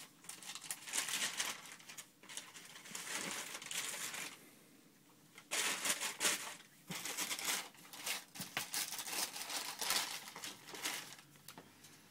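Paper packing in a shoebox crinkling and rustling in irregular bursts as sneakers are lifted out and handled, with a pause of about a second near the middle.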